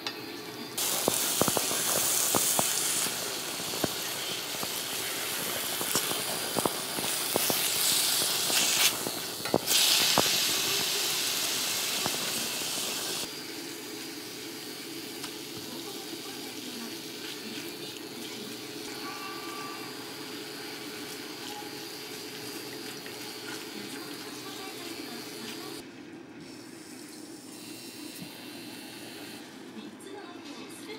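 Thinly sliced beef sizzling in a stainless-steel pot on an induction hob, with chopsticks clicking against the metal as it is turned. The sizzle is loud for the first dozen seconds, then drops to a quieter frying. A steady hum runs underneath.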